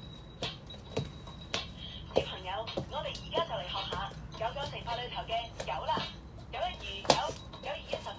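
A voice talking rapidly, over sharp knocks and thumps scattered throughout, with the loudest knock about seven seconds in.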